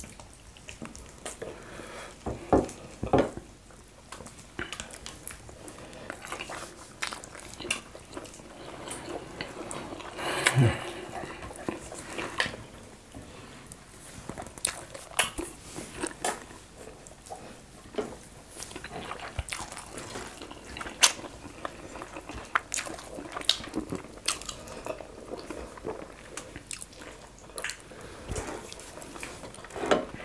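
Close-up eating sounds of fufu and slimy okra stew eaten by hand: wet chewing, with frequent short mouth clicks and squelches of the sticky food. The loudest clicks come about three seconds in and about ten seconds in.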